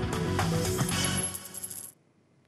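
A short news-bulletin music sting with many sharp clicks through it, cut off abruptly near the end.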